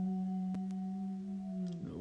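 A man humming one long, steady note that stops just before the end.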